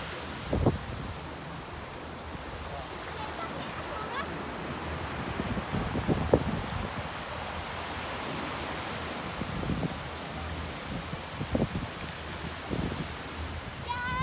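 Small waves breaking and washing up on a sandy, rocky shore, with wind buffeting the microphone in low thumps.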